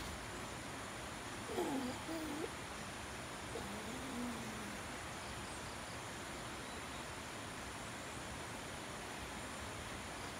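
Steady rushing of a fast-flowing river running high after a day of hard rain. Two short pitched vocal sounds rise above it, one about a second and a half in and a lower one about four seconds in.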